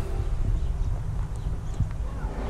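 Footsteps on a dirt path, a few soft knocks with one sharper step near the end, over a low rumble on the microphone.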